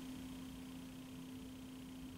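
Faint room tone: a low steady hum over soft hiss, with nothing else happening.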